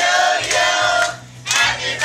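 A group of women singing together in unison, with hands clapping along in time. The singing breaks briefly a little after one second in.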